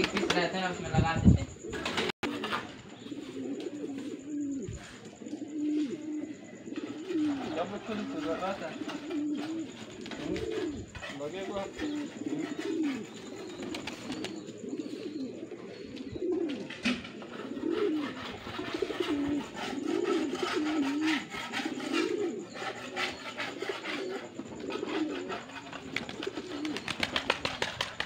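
Domestic pigeons cooing, a low rising-and-falling coo repeated about once every second or so.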